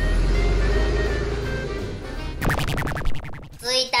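Bus engine sound effect: a low rumble as the toy bus drives in, over background music, then about a second of fast rattling clicks.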